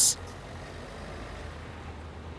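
Street traffic ambience: a steady low rumble of road vehicles passing close by.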